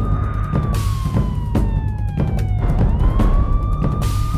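Police siren wailing through one slow cycle: it holds high, falls gradually for about two seconds, then rises back quickly near the end, over background music with heavy drum hits.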